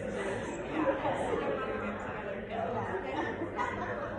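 Audience chatter in a recital hall: many overlapping voices talking at once at a steady level, with no single speaker standing out.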